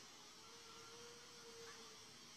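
Near silence with a faint, drawn-out wailing tone held for about a second and a half, which the guard recording it takes for the distant cry of La Llorona.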